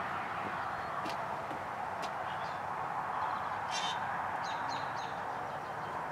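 Outdoor ambience: a steady hiss with a few small-bird chirps, a short high burst around the middle and three quick falling chirps about a second later, and two soft clicks early on.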